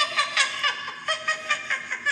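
High-pitched laughter, a quick run of short 'ha' pulses, about five a second.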